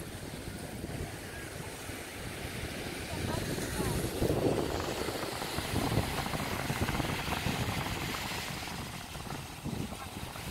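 Beach ambience: wind rumbling on the microphone over the wash of surf, with indistinct voices in the background. It swells for a few seconds in the middle.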